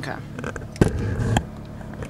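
Phone handled close to its microphone as the camera lens is wiped clean: a loud, short rubbing and knocking burst about a second in, over a faint steady low hum.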